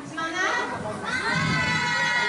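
Young children's voices, with one child holding a long, high, steady call from about halfway through.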